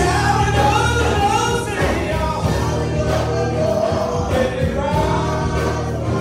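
A church praise team singing gospel music with a live band, voices in harmony over drums and a steady low bass line.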